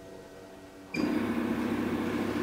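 A low, steady machine hum with a few held tones. About a second in, a much louder, steady whirring noise starts suddenly.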